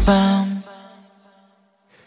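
A K-pop song with one held sung note over a sustained chord, which stops abruptly about half a second in. The music then falls into near silence for a break in the track.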